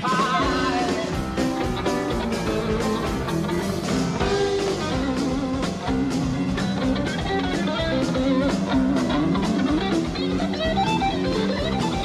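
A rock band playing live: piano with electric guitar, in a dense, unbroken instrumental passage.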